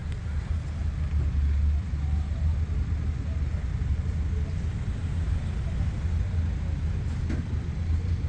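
A steady low rumble of outdoor background noise.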